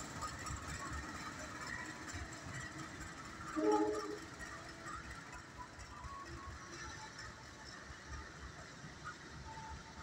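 A CC 201 diesel-electric locomotive running light, its low engine rumble fading as it moves away down the track. A brief pitched sound about three and a half seconds in stands out as the loudest moment.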